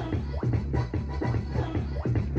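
DJ set played over a sound system: electronic dance music with a steady bass beat and record scratching over it.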